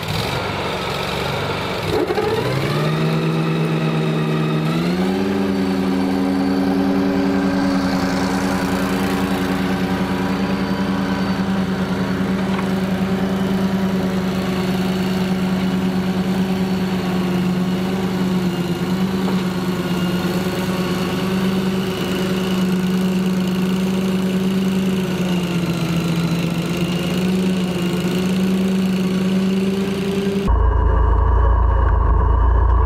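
Engine of a Walker T27i riding mower, a Kohler EFI V-twin, running under way. Its pitch drops about two seconds in, then climbs to a steady high speed that holds, with a short dip near the end.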